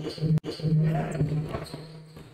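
Basketball court sound in a sports hall: a single sharp knock, then a steady low hum and faint court noise.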